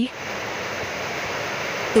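Pot of water at a rolling boil with dough balls cooking in it: a steady rushing, bubbling noise.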